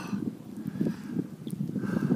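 Wind buffeting the phone's microphone: an uneven low rumble.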